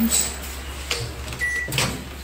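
Microwave oven: a single short electronic beep about one and a half seconds in, followed by a click as the door is opened, over a faint steady hum.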